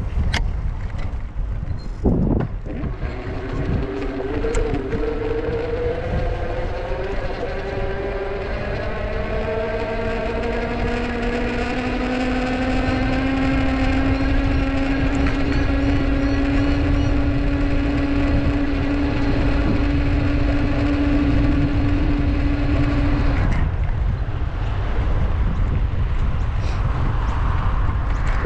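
Wind rushing over an action camera's microphone on a moving bicycle. A humming tone starts a few seconds in, climbs slowly in pitch, holds nearly steady, and cuts off suddenly a few seconds before the end.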